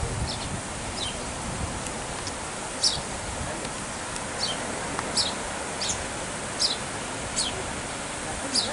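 A small songbird calling: short, high chirps, each sliding downward in pitch, repeated irregularly about once a second over a steady background hiss.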